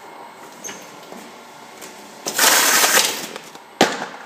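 Hamrick T25 case taper's tape head sealing a carton: about two seconds in, a loud hissing rasp of packing tape pulling off the roll and pressing onto the box lasts about a second, followed by a single sharp snap near the end.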